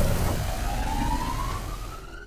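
Cartoon energy-attack sound effect for a crackling lightning ball: a single whine climbing steadily in pitch over a low rumble.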